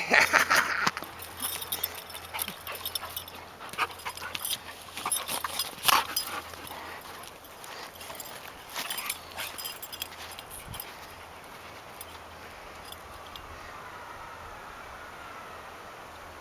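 Dogs play-fighting on sandy ground: scuffling and short sharp sounds from the dogs, busiest in the first ten seconds and then quieter.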